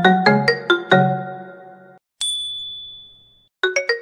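Short logo jingle of bright, chime-like struck notes. It opens with a quick run of four notes that ring and fade, has a single high ding a little over two seconds in, and ends with another fast run of notes.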